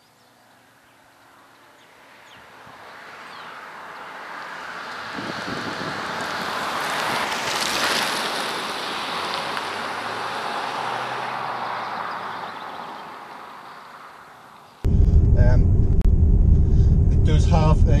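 MG HS SUV driving past on a country road: engine and tyre noise grow louder, peak about eight seconds in, then fade away as the car recedes. Near the end it gives way abruptly to the steady low rumble of the car's cabin on the move.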